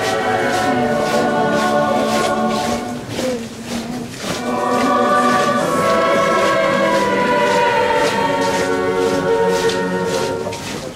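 A choir singing a slow religious hymn in Spanish, several voices holding long notes together. The singing thins out briefly about three seconds in, then swells again.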